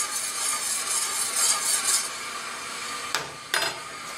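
A metal spoon stirring sugar syrup in a stainless steel saucepan, scraping and swishing against the pan in a quick rhythm for about two seconds. About three seconds in come two short clicks as the spoon is set down.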